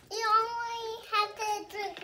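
A young child singing: one long held note, then a few shorter notes.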